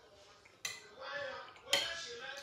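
Metal fork clinking against a ceramic bowl twice, about a second apart, each strike briefly ringing; the second is the louder.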